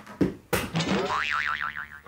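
Cartoon 'boing' sound effect: a sharp hit followed by a springy tone that wobbles rapidly up and down for most of a second.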